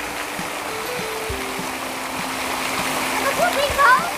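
Steady rush of water falling from an outdoor water feature, with a few long held notes under it and a voice coming in near the end.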